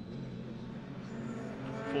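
Race pickup truck engines in the distance, a steady low drone that drops slightly in pitch near the start.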